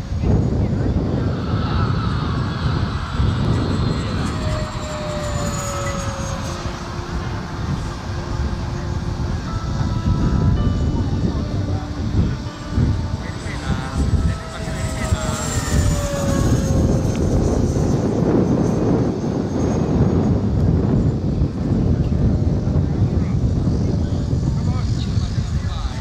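Radio-controlled model jet flying overhead. It makes two passes, about five and fifteen seconds in, each with a whine that falls in pitch as it goes by. All of this sits over a loud low rumble.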